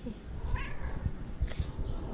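Domestic cat meowing: a short call about half a second in, then a short sharp sound about a second and a half in, over a low uneven rumble.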